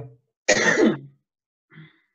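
A person's short, breathy burst of voice, about half a second long, starting about half a second in.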